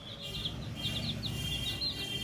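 Baby chicks peeping: a steady run of short, high cheeps, several a second, each falling in pitch.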